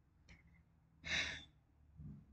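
A woman's single short, breathy sigh about a second in, preceded by a faint click.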